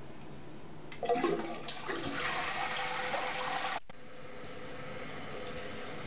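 A toilet fitted with a dual-flush kit being flushed: a clunk about a second in, then a loud rush of water through the tank and bowl. It breaks off sharply near the middle and a quieter, steady rush of water follows.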